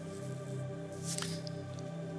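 Quiet background music: a sustained chord of steady held tones, like an ambient keyboard pad, with a faint click about a second in.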